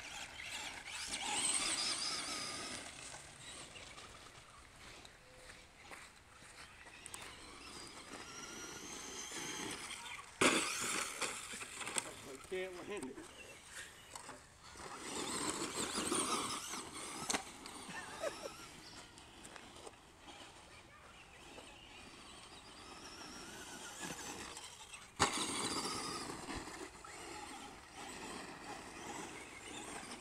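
Brushed electric motor of a Traxxas Stampede RC monster truck whining up and down in repeated bursts of throttle, with its tyres crunching over dirt. Sharp knocks about ten seconds in and again near twenty-five seconds mark hard landings or hits.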